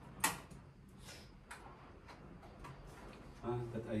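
Small plastic clicks and ticks from a home internet router and its cables being handled, with one sharper click about a quarter second in and fainter ones scattered after it.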